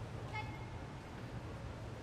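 Quiet ambience of a large hall: a steady low hum under faint background noise, with one short high-pitched tone about a third of a second in.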